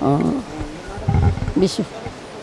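An elderly woman speaking Nepali in short phrases, with a brief low rumble about a second in.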